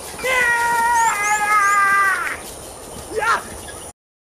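A person's voice calling out one long held note, about two seconds, that steps down in pitch partway through. A short falling cry follows near the end.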